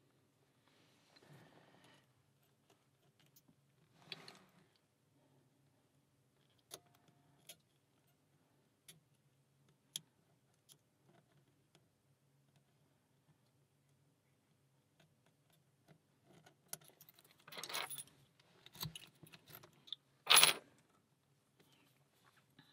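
Faint metallic clicks and scrapes of a pick and tension wrench working the five pin stacks of an Alpha 1000-60 brass pin-tumbler padlock: scattered single clicks at first, then a busier run of rattling clicks in the last few seconds, with the loudest sharp metallic clack about a second and a half before the end.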